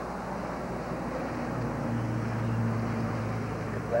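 A low, steady engine hum that grows louder about a second and a half in and eases off near the end, over a constant hiss.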